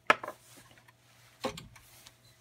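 A small metal camping stove is picked up off a glass-topped digital scale with a sharp click and some light handling noise. About a second and a half in, it is set down on a tabletop with a softer knock.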